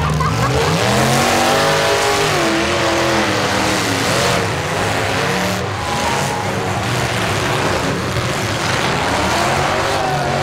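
Several V8 demolition derby car engines running and revving together, one engine's pitch climbing and then falling about a second in.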